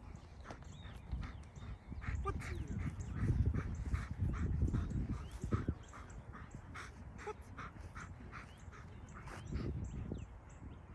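A German Shepherd dog whimpering, with short, repeated sounds two or three a second, over a low rumble that swells through the middle.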